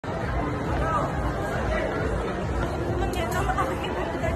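Indistinct chatter of several voices in a mall, over a steady low rumble of background noise.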